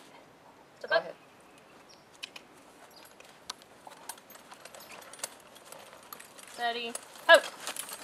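Horses' hooves stepping, a scattered series of faint clicks as a pair of Morgan horses walks forward a few steps. A short spoken command comes about a second in, and a "whoa" near the end calls the halt.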